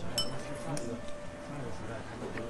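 A light clink of tableware about a quarter second in, with a brief high ring, then a softer tap, over the murmur of restaurant chatter.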